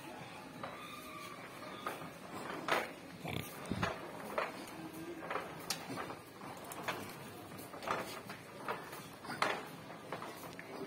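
Footsteps on a tiled supermarket floor, a short sharp step every half second to a second, over a steady store background hum, with a brief low sound about three and a half seconds in.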